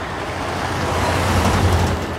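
A low, steady rumble with a rushing hiss over it, swelling toward the end. It is an ambience of the kind laid under heavy mining machinery.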